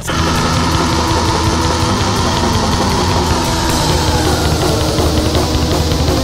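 Black metal music: the full band comes in suddenly at the start, a loud, dense and steady wall of distorted guitar and drums.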